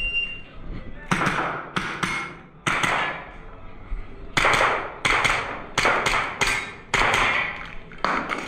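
A shot-timer start beep, followed by about ten handgun shots with room echo, the later ones fired in quick pairs as targets are engaged.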